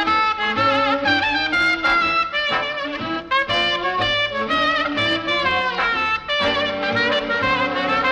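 A 1940s swing big band playing, with a trumpet leading the melody in long, wavering held notes over the brass and a steady bass beat.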